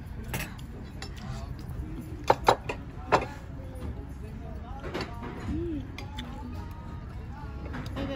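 Cutlery clinking on plates: a few sharp clinks between two and three seconds in and another about five seconds in, over a steady hum of background voices.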